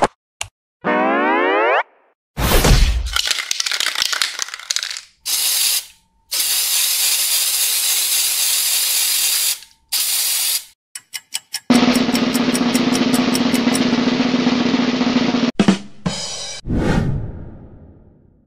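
A string of cartoon sound effects. A boing-like glide about a second in and a thump are followed by an aerosol spray can hissing in several bursts, the longest about three seconds. A quick rattle, a steady buzzing hiss of about four seconds and a fading whoosh near the end follow.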